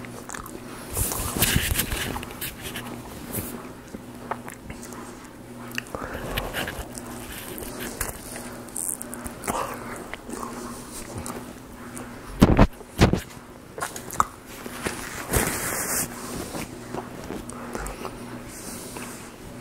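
Close-miked chewing and mouth sounds of a man eating a sausage, egg and cheese bagel sandwich: irregular wet smacks, crackles and small clicks as he bites and chews. The loudest moment is two sharp knocks close together a little past the middle. A faint steady hum runs underneath.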